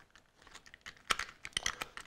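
Light, irregular clicks and taps of small plastic parts being handled, starting about half a second in: a compartmented plastic box of RJ45 connector plugs being opened and handled.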